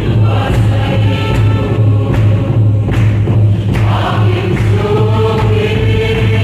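A choir of women and a standing congregation singing a hymn together over a steady low beat.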